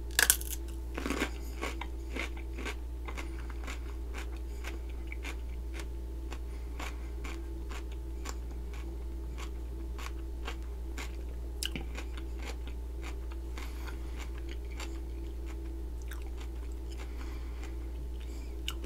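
A crisp bite into a raw cucumber right at the start, then crunchy chewing of the cucumber: many small crunches scattered through the rest.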